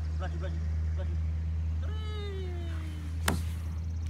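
A long vocal call falling in pitch, about halfway through, as a toddler rides down a plastic playground slide, followed by a single sharp knock near the end. A steady low rumble runs underneath.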